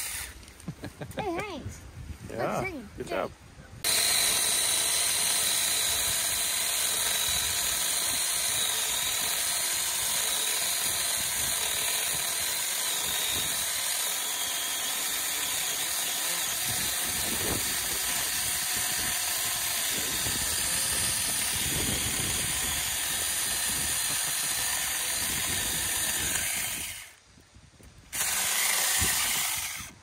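Saker 4-inch mini cordless electric chainsaw running steadily while cutting through a log, with a steady high whine. It starts about four seconds in and runs for over twenty seconds before stopping, then gives one short burst near the end.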